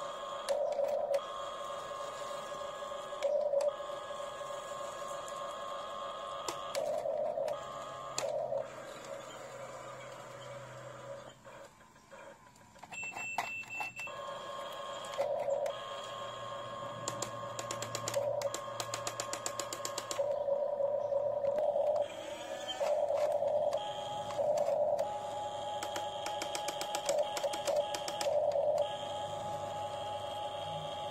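Huina RC excavator's small electric motors and gearboxes whining in stretches as the boom, bucket and tracks move, with a steady mid-pitched whine that starts and stops repeatedly. There is a short lull near the middle.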